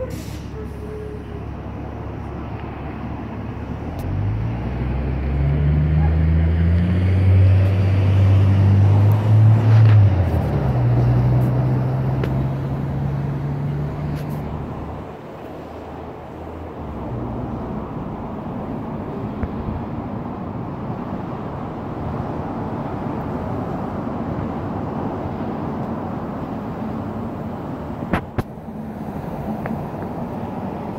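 Street traffic going by, with a heavy vehicle's engine passing loudly from about four seconds in, its pitch rising as it pulls away, and fading out about fifteen seconds in. Steady road noise continues after it, with a brief sharp click near the end.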